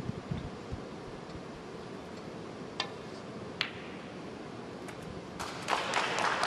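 Snooker balls: a sharp click of the cue tip on the cue ball about three seconds in, then a second click under a second later as the cue ball strikes a red. Audience applause starts near the end for a long red potted.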